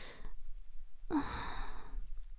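A woman's breathy, flustered sigh about a second in: a short voiced "oh" that trails into a long exhale, a sign of her embarrassment.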